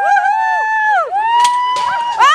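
Onlookers whooping in long, high held calls as a man drops off a dunk-tank seat into the water, with a splash of water near the end.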